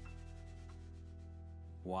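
The last chord of a song on a grand piano, ringing on and slowly fading, with a couple of soft high notes added in the first second. Speech starts right at the end.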